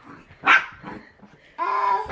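A pet dog barks once, sharply, about half a second in, with a fainter bark just after. Near the end a steady, even-pitched tone begins.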